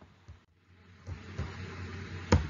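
Faint room noise with a few soft low knocks. It is almost silent for the first second, then a light hiss sets in.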